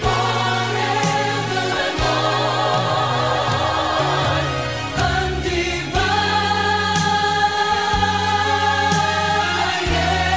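Contemporary Christian pop song: a vocal group sings long held notes in harmony, with vibrato, over a band with bass and a few drum hits.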